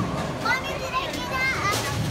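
High-pitched voices, children talking and calling out, with pitch rising and falling, and a few brief clicks near the end.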